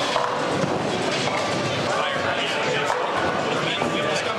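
Bowling alley din: people's voices chattering indistinctly, with music playing in the background.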